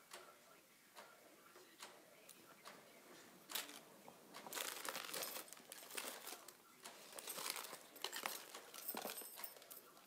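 Rustling and crinkling of jewelry packaging being sorted by hand, with scattered small clicks. It is faint at first and gets busier and louder from about three and a half seconds in.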